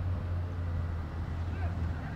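Outdoor field ambience: a steady low rumble with faint, distant voices.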